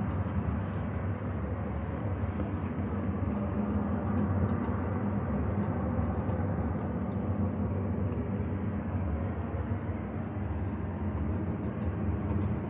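Steady low rumble and hiss heard inside a moving cable car gondola as it travels along its cable.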